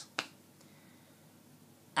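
A single short, sharp click about a fifth of a second in, then near silence with faint room tone.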